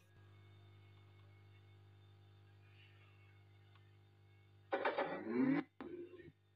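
A TG113 Bluetooth speaker briefly sounds about five seconds in after near silence: about a second of pitched, voice-like sound, then a break and short choppy fragments. This is the intermittent cutting-out fault, which persists after the amplifier IC was replaced.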